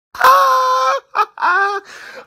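A high-pitched voice wailing: one long held cry of almost a second, a brief sound, then a shorter cry that dips and rises in pitch.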